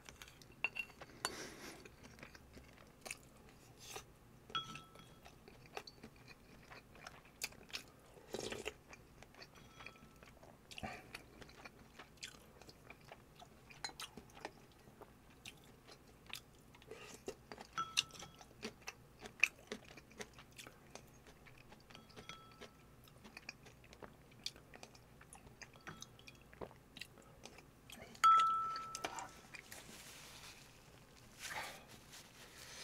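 Close-miked chewing and mouth sounds of a man eating with a spoon. Light spoon clinks on ceramic bowls ring briefly several times, the loudest near the end.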